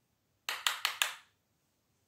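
Four quick, sharp taps or knocks in a row, about half a second into the clip, from makeup items being handled.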